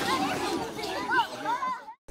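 Several people's voices chattering in the background, dying away to silence just before the end.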